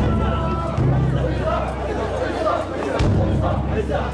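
Crowd of mikoshi bearers and onlookers, many voices shouting and calling at once around the portable shrine, over a steady low rumble, with a sharp click at the start and another about three seconds in.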